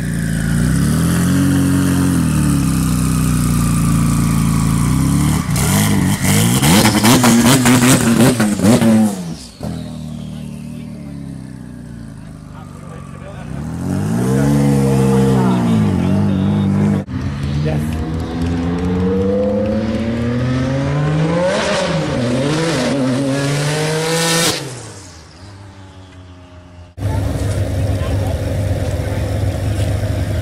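Sports-car engines revving and accelerating in several cut-together clips, each rising sharply in pitch and then falling away, beginning with a Porsche 996 Turbo's twin-turbo flat-six pulling out. In the last few seconds a Ferrari 599's V12 idles steadily.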